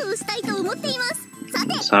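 A high-pitched young female anime voice speaking Japanese in a lilting, sing-song way over light background music.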